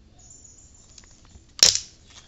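Gloved hand handling a marker and a plastic scientific calculator on a whiteboard: faint rubbing and small ticks, then one sharp plastic clack about one and a half seconds in as the calculator is picked up.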